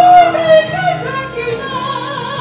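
A woman singing a gospel solo with vibrato over instrumental accompaniment, loudest on a high held note at the start that slides down.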